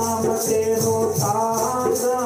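Devotional bhajan: a man singing with instrumental accompaniment, over a steady rhythmic jingling percussion repeating several times a second.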